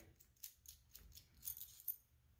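Faint light clicks and scrapes of a metal airbrush being handled as its rear handle piece is taken off.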